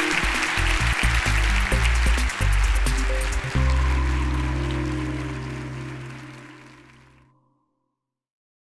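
Audience applauding with the closing music played over it. The music settles on a held chord about three and a half seconds in and fades out with the applause, ending in silence near the end.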